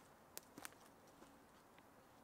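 Near silence: faint outdoor ambience with two faint short clicks in quick succession about half a second in.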